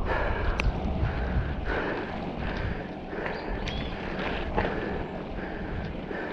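Mountain bike rolling over a grooved concrete track, heard from the handlebars as a steady rumble of tyres and wind on the microphone, with a few sharp rattles and knocks from bumps.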